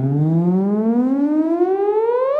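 Theremin sounding one continuous tone that glides smoothly upward, about two octaves, as the player's right hand moves closer to the vertical pitch antenna: nearer the rod, higher the pitch.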